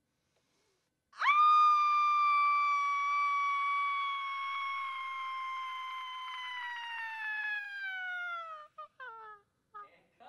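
A woman's long, high-pitched scream. It starts about a second in and is held for about seven seconds, its pitch slowly sinking, then breaks into a few short cries near the end.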